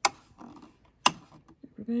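Two sharp clicks about a second apart, with a few faint ticks between, from tweezers and hands working at the needle area of a cover stitch machine during threading.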